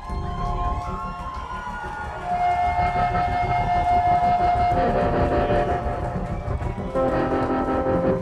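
Live band with a horn section playing the closing bars of a song: saxophone and horns hold long chords over drums and resonator guitar. The held chord shifts about five seconds in and again near the end.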